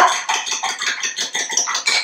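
Fork beating two raw eggs in a ceramic bowl, the metal tines clicking and scraping against the bowl in a quick, even rhythm.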